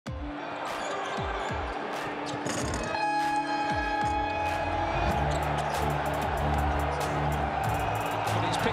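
A basketball dribbled on a hardwood court, each bounce a short low thud, with arena crowd noise around it. Music with a heavy bass comes in about five seconds in.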